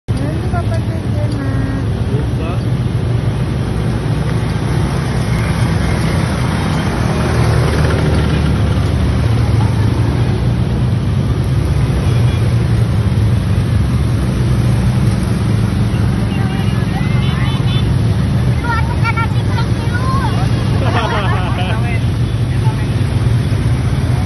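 Many ATV (quad bike) engines running together as a convoy rides past, a steady dense engine drone. Riders' voices are heard over it, more of them in the later part.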